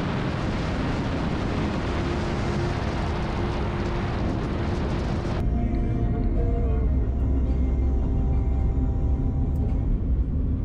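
Steady road and wind noise of a Jeep Liberty driving, changing abruptly about five seconds in to a deeper, duller rumble. Soft music with held notes plays over it.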